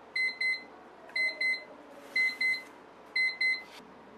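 Electronic timer alarm beeping in double beeps, four pairs about a second apart, signalling the end of a timed reading session.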